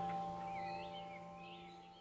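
Singing bowl ringing out after a strike, several steady tones slowly fading, with birds chirping over it.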